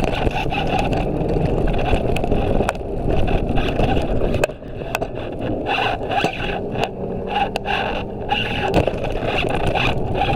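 Scooter wheels rolling over a paved footpath: a steady rough rumble broken by frequent sharp ticks and knocks as the wheels cross joints and bumps in the paving.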